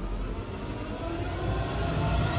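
Low, rumbling drone of dramatic background music, held steady under a tense silent moment.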